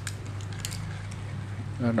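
Used size-4000 spinning fishing reel with a metal spool being cranked by hand: a faint whir with a few light clicks as the rotor turns smoothly, over a steady low hum.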